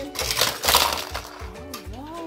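Die-cast toy cars clattering down a Hot Wheels playset's plastic race track, a noisy rattle lasting about a second, over background music.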